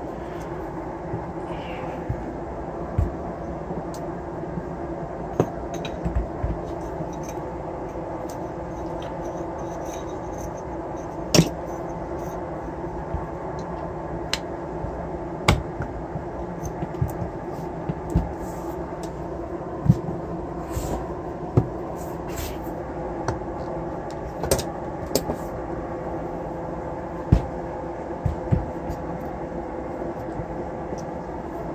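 Scattered clicks and knocks of metal parts being handled and fitted together as a brushless motor's can, shaft and end cap are reassembled by hand. A steady background hum runs underneath.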